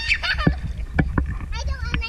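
A young girl's high-pitched squealing laughter, with water sloshing and splashing close to the microphone in several sharp slaps.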